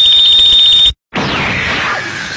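A very loud edited-in sound effect. It begins with a shrill steady tone over harsh noise that cuts off suddenly about a second in. After a short gap a second loud, noisy sound follows, falling in pitch.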